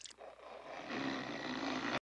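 A man's long roar, starting about halfway in, growing louder and then held steady.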